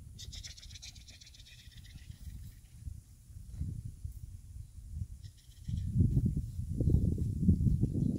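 High-pitched whining from rottweiler puppies in the first couple of seconds, then wind buffeting the microphone in irregular low rumbles, loudest over the last two seconds.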